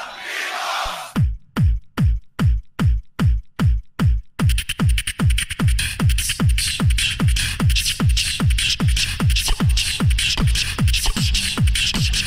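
Loopstation beatbox: a beatboxer's looped vocal drum beat starts with a steady deep kick pattern, about two to three hits a second. About four seconds in, a fast, busy layer of high clicks and hiss is stacked on top, giving an electronic, techno-like groove.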